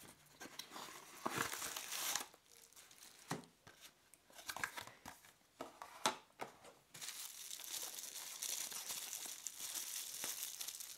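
Plastic bubble wrap crinkling and rustling as a bubble-wrapped keyboard is pulled from its small cardboard box and handled, with scattered light clicks. A steadier crinkling sets in about seven seconds in.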